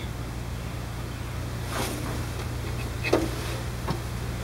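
An engine running steadily at idle, a low even hum, with two faint clicks about two and three seconds in.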